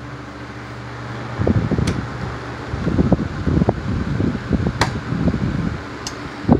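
Oscillating electric desk fans running with a steady low motor hum. About a second and a half in, air from a fan starts buffeting the microphone in uneven gusts for the rest of the stretch, with a couple of sharp clicks.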